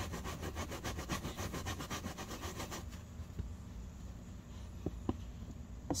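Stiff-bristled hand brush scrubbing wet carpet in quick back-and-forth strokes, about eight a second, working cleaner into dried paint to soften it. The scrubbing stops about three seconds in, leaving a quieter rubbing and a couple of light taps.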